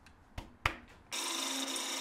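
Two short clicks, then from about a second in a steady cutting sound: a hand-held turning tool shaving the spinning paper birch blank on a wood lathe as the vase's short neck is begun.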